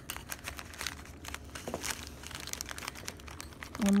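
A clear plastic zip-top bag crinkling, with irregular small clicks and snaps as needle-nose pliers break the last glass shards off the base of a halogen projector lamp inside the bag.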